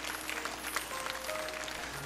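A studio audience applauding steadily, with background music under it.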